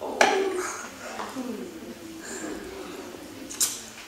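A sharp knock about a quarter second in and another near the end, with low voices or laughter between them.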